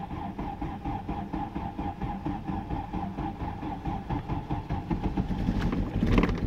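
Volkswagen Passat petrol engine idling just after a cold start at −17 °C, with a steady whine over a dense, slightly uneven pulsing.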